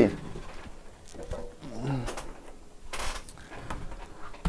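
Handling noises of a laptop base being set down and positioned on a rubber work mat: scattered light knocks and clicks with a brief scrape about three seconds in. Some faint mumbling is also heard.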